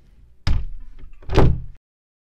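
A wooden interior door banging shut about half a second in, followed about a second later by a second, louder crash. The sound cuts off abruptly just after.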